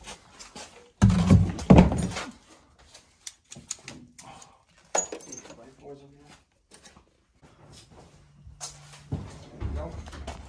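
Rummaging through a cluttered garage shelf: a plastic oil drain pan is shifted and pieces of perforated steel strap clatter and click against each other, loudest in a burst early on and with a sharp click about halfway.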